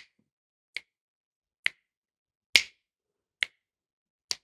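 Finger snaps keeping a steady beat, four short snaps a little under a second apart, the third the loudest. They mark the pulse of a 3/4 rhythm exercise.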